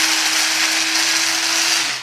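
Philips hand blender motor running at a steady speed in its chopper bowl, blending chopped tomatoes into puree. It is switched off near the end, and its hum drops as the motor winds down.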